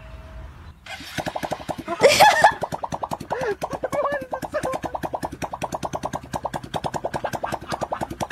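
A paper party blower fitted over a small engine's exhaust pipe, buzzing in quick toots with each exhaust pulse, about ten a second. It starts about a second in and keeps an even rhythm after that.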